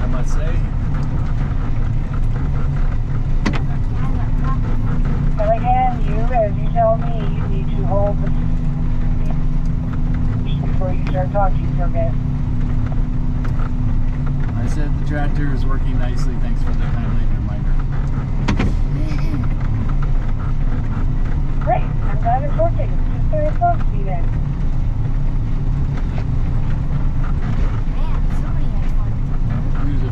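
Engine of a snow-plowing machine running steadily under load as its front blade pushes slushy snow.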